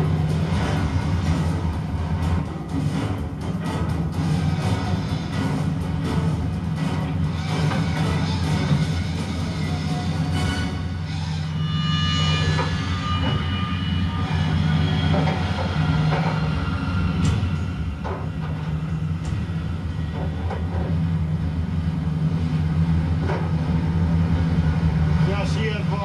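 Television documentary soundtrack of crab-pot hauling on a fishing boat's deck, played back through a TV set. Background music runs over a steady low drone, with occasional knocks and clanks from the gear and indistinct voices.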